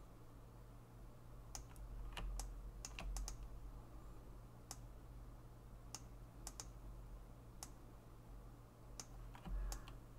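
Faint, irregular clicks of a computer keyboard and mouse, about fifteen in all, bunched in the first few seconds and then spaced out. Underneath is a low steady hum.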